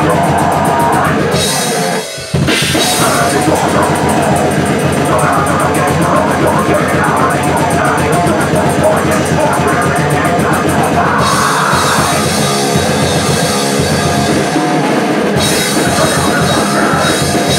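Drum kit played hard and fast in grindcore style, with rapid blast-beat strokes on cymbals and drums. It stops briefly about two seconds in, then carries on.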